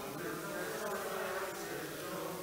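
A group of voices faintly chanting a line of a Sanskrit verse in unison, repeating it after the leader in call-and-response recitation.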